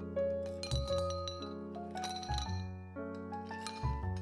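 Coffee ice cubes clinking against each other and the glass as they are tipped into a drinking glass, a run of sharp clinks, over steady background music.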